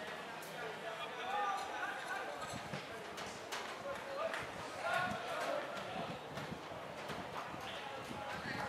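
Indistinct shouting and calling from football players and onlookers, with scattered sharp knocks through it.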